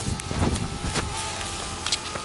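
Wind gusting on the microphone, with a rumble that swells about half a second in, a few small clicks and a faint steady hum.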